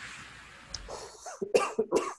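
A man coughing and clearing his throat in a few short bursts during the second half, after a soft breathy hiss at the start.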